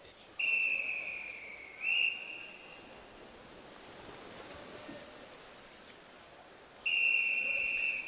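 Referee's whistle: a long, slightly falling blast ending in a short rising chirp about two seconds in, with the echo dying away in the pool hall, then a second long blast near the end. These are the long-whistle signals calling backstroke swimmers into the water and then onto the wall to take their starting position.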